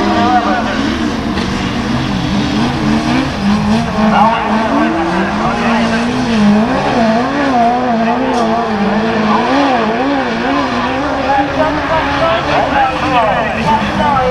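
Racing buggies' engines revving hard on a dirt track, their pitch rising and falling over and over as the drivers work the throttle through the bends.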